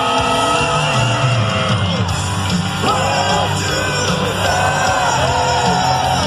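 Heavy metal band playing live through a stadium PA, with electric guitars, bass and drums, and loud singing that slides between held notes, heard from within the crowd.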